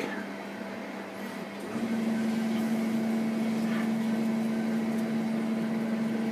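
A steady machine hum at one fixed pitch starts about two seconds in and keeps running evenly.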